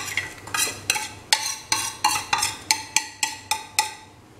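A ceramic plate clinking repeatedly against the rim of an aluminium cooking pot as spices are knocked off it into the pot. There are about a dozen clinks, roughly three a second, each ringing briefly.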